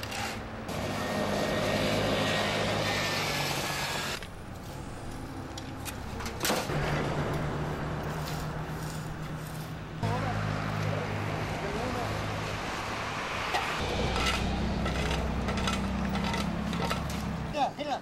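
A truck engine idling with steady low humming tones, mixed with indistinct voices; the sound changes abruptly at several cuts.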